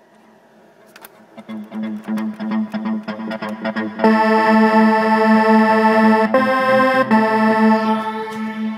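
Electronic song built from GarageBand synth loops playing back: a pulsing synth pattern over a steady low note fades in over the first second or two, then about four seconds in a loud, sustained synth layer comes in and the music turns much fuller.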